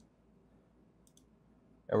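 Faint computer mouse clicks: a single click at the start, then a quick double click about a second in.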